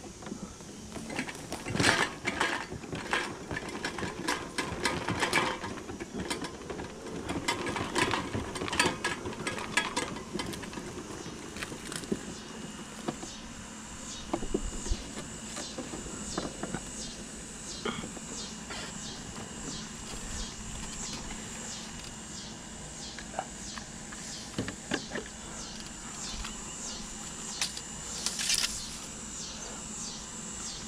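Irregular clicks and light metallic clatter of scrap being handled, busiest in the first half. Over the second half a high-pitched insect chirping pulses about twice a second.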